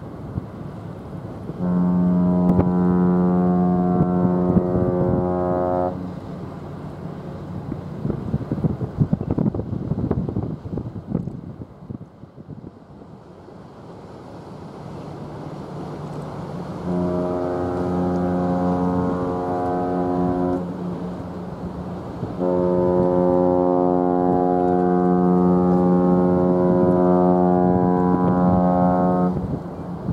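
Cruise ship's horn sounding three long, steady blasts: the first and second about four seconds each, the last about seven seconds. These are horn salutes exchanged between passing P&O cruise ships.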